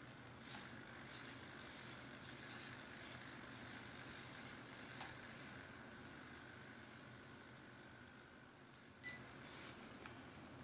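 Faint whirring of a hexapod robot's hobby servos in short bursts as its legs step in a crawling gait, then a short electronic beep from the robot about nine seconds in, marking a change of gait.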